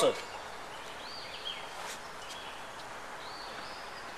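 Quiet outdoor background noise with a few faint, high bird chirps.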